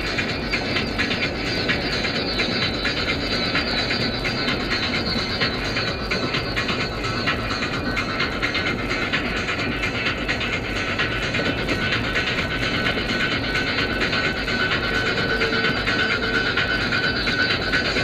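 Music playing inside a moving car's cabin over steady road and engine noise from freeway driving.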